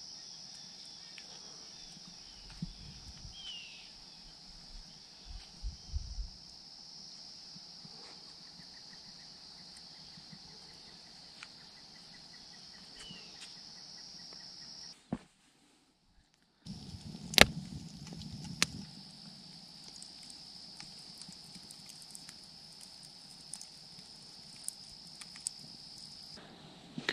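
Crickets chirring in one steady, high, unbroken drone. It cuts out completely for a moment about halfway through, then carries on the same, with a few sharp clicks just after.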